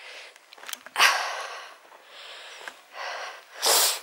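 A person breathing close to the microphone: a long noisy exhale about a second in and a sharp, hissing intake of breath near the end.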